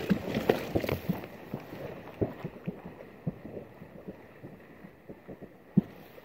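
Distant shotgun shots from hunters around the marsh, heard as many irregular dull thuds, the loudest near the end.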